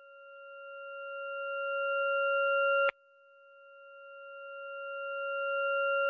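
A steady electronic beep-like tone that swells up from silence over about three seconds and then cuts off abruptly, twice, with a short gap between.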